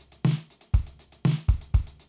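A programmed drum groove on Logic Pro's Liverpool acoustic drum kit, played back from the step sequencer at 120 BPM. Kick and snare hits sit under steady sixteenth-note closed hi-hats, about eight ticks a second.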